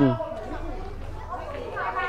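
Background chatter of several people talking at once, under a steady outdoor murmur, after the tail of one loud spoken word right at the start.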